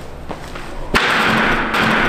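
Running footfalls, then a sharp crack about a second in as feet strike the springboard for a vault over a tall wooden vaulting box, followed by loud noise as the vaulter goes over.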